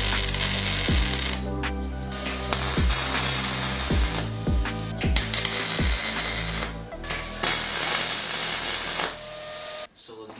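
MIG welder crackling as it welds the steel tube frame, in four bursts of about one to two seconds each, the last ending about a second before the end. Background music with a steady beat plays under it.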